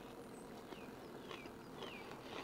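Quiet background with a few faint, short falling bird chirps, about one every half second.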